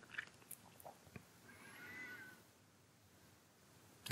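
Near silence: quiet room tone, with a few faint clicks early and a faint, brief, slightly wavering high-pitched call about two seconds in.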